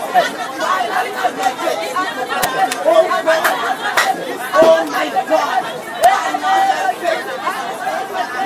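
Many voices praying aloud at once in a large hall, overlapping into an unintelligible babble, with a few sharp clicks.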